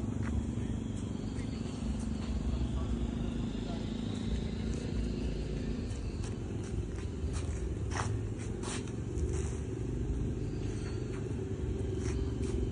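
John Deere tractor's diesel engine running steadily as it pulls a loaded farm trolley away, a continuous low rumble with a few light clicks and rattles about two-thirds of the way through.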